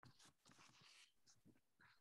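Near silence on a video call, with faint, irregular short hissing noises coming through a participant's microphone.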